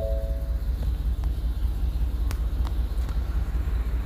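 A steady low hum, with a brief pair of short, flat tones near the start and a few faint ticks.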